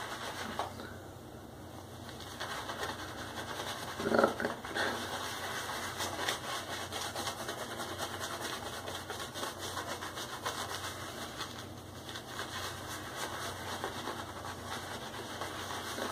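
Shaving brush worked over a lathered scalp: a steady, rapid wet swishing and crackling of shaving-soap lather as the lather is built up.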